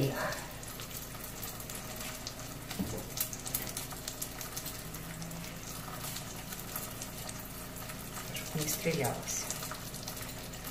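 Breaded zucchini frying in hot oil in a pan, with a steady sizzle and fine crackle.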